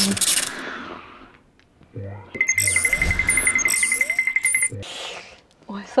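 Edited-in sound effects: a burst of static-like glitch noise that fades over about a second, then, about two seconds in, a steady high electronic ringing tone with a rapid pulse that lasts about two and a half seconds and cuts off.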